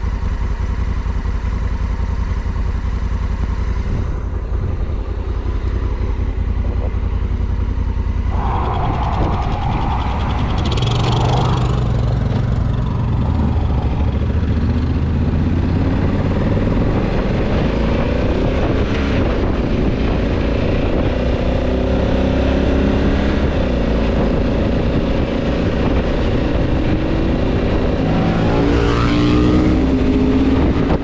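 Motorcycle engine idling for the first several seconds, then running under way and accelerating, its note rising and dropping back several times as it shifts through the gears.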